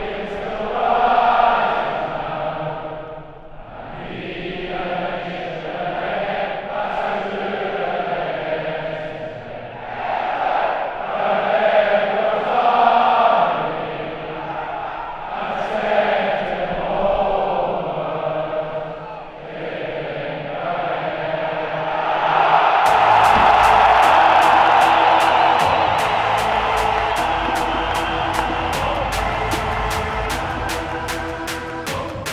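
Many voices singing together in a slow, chant-like tune. About three-quarters of the way through, an electronic music track with a fast ticking beat takes over and is louder.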